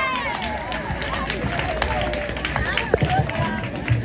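Crowd chatter and indistinct voices with music under them, and a few sharp knocks.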